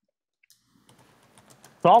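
Faint, scattered clicks of typing on a laptop keyboard, several keystrokes a second, beginning about half a second in. A man's voice starts just before the end.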